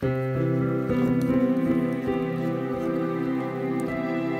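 Casio Privia PX-S1000 digital piano playing a layered tone of bright grand piano and strings, with held chords. The first chord is struck abruptly at the start and new notes join about a second in.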